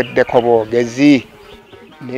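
A man's voice speaking in short phrases, stopping a little over a second in.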